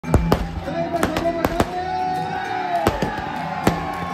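Fireworks going off in a run of sharp bangs, about nine in four seconds at irregular intervals, over music playing through loudspeakers.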